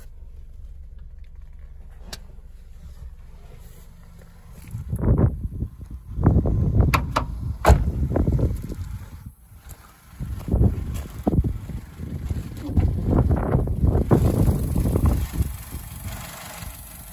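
A small petrol car engine idling with a low steady hum, with a couple of sharp clicks. From about five seconds in, loud irregular rumbling and knocks of handling noise take over, with one louder sharp click partway through.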